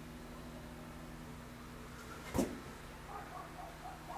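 A dog barking once from outside, short and sharp about two and a half seconds in, with faint neighbours' voices near the end, over a steady low hum.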